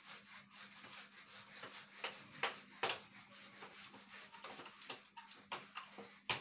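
Board eraser rubbed back and forth across a whiteboard in quick, uneven strokes, wiping off marker writing.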